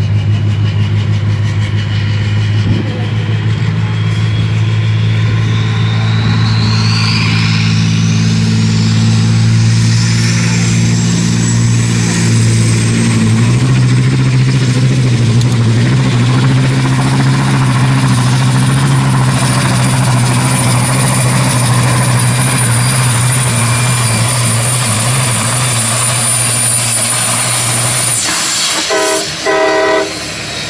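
A Volvo FH truck's diesel engine runs hard under load, pulling a weight-transfer sled. A turbo whine rises over several seconds and then holds high, and the engine note steps up partway through. The engine cuts off suddenly near the end as the pull stops.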